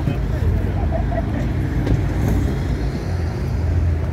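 Car engine running close by, a steady low rumble with no bangs or sharp revs.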